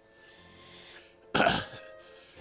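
A man coughs once, sharply, about a second and a half in, after a faint breath.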